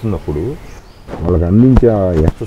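A man talking in a conversational interview: a short phrase, a brief pause, then stronger continuous speech through the rest.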